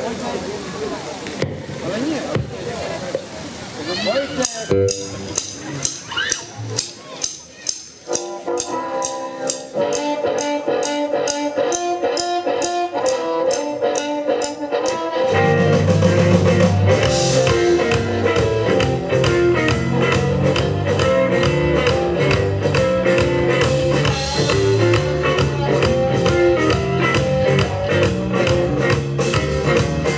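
A live blues band starting a number. About four seconds in, a steady drum beat begins with harmonica and electric guitar over it. About fifteen seconds in, the bass and full drum kit come in and the band plays louder.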